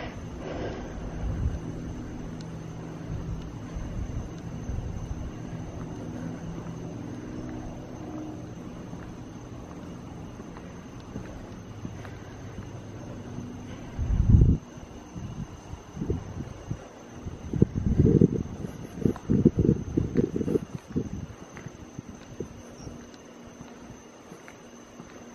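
Wind buffeting the microphone in low rumbling gusts: one strong blast about fourteen seconds in, then a run of irregular gusts for several seconds. Under it is a steady low hum.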